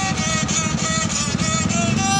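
Small homemade wooden fiddle bowed with a stick bow, playing a lively tune of short notes, about four or five a second. Underneath, a motor vehicle engine runs with a low, fast-pulsing rumble.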